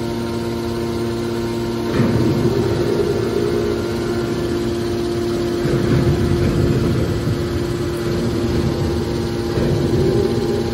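Hydraulic scrap metal baler's power unit running with a steady motor-and-pump hum, one of its tones dropping out about two seconds in. Louder rushing surges come about two seconds in, again around six seconds and near the end, as the hydraulics take load.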